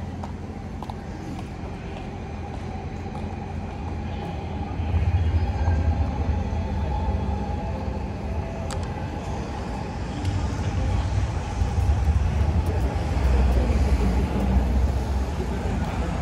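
City street traffic: a steady low rumble of passing vehicles that swells about five seconds in and again from about eleven seconds.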